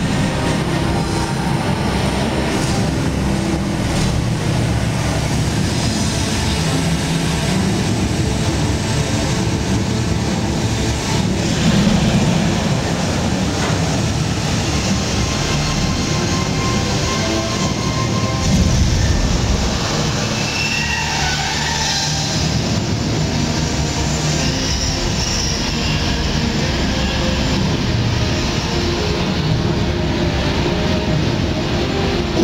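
Steady loud rumble of stage fire effects: gas-fed flames burning across the set, with two louder surges about twelve and eighteen seconds in.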